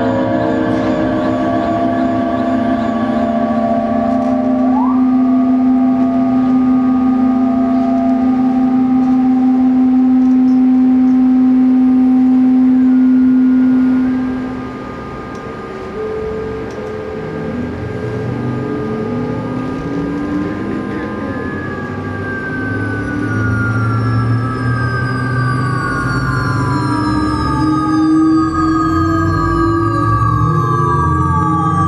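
Electronic drone music built from UPIC-system and analog-synthesizer material: layered sustained tones over a strong low hum that fades out about halfway through. In the second half, many high tones glide slowly downward in overlapping, siren-like sweeps.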